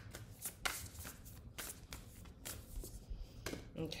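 A deck of oracle cards (The Prophet oracle deck) being shuffled by hand: a string of short, irregular card slaps and flicks.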